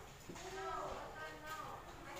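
Faint voices speaking in the background.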